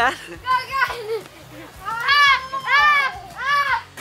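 Excited, high-pitched yelling and shrieks in play, three loud squeals in a row in the second half.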